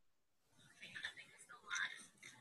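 Near silence, then from about a second in faint, murmured or whispered voices.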